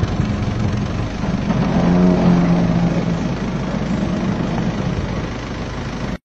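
A vehicle engine running steadily with a rough rumble. A short steady pitched tone rises above it about two seconds in.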